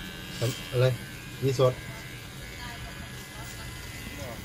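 Electric hair clipper buzzing steadily, with a few short spoken words in the first two seconds.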